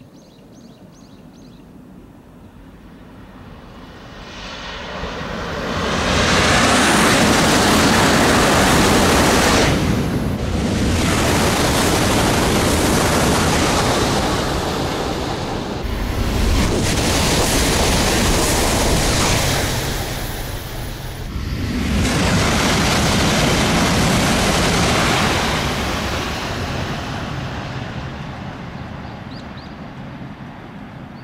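E956 ALFA-X Shinkansen test train passing at about 355 km/h. A rushing noise builds over a few seconds, stays loud in several long surges with brief dips, then fades away toward the end.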